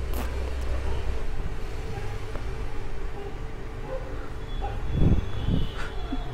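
Steady low rumble of background noise, strongest in the first second, with a short murmur of a man's voice about five seconds in.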